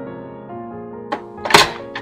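Two knocks, a light one and then a sharper, loudest one about one and a half seconds in, as something is set down on or moved across an espresso machine's drip tray, over background music with piano.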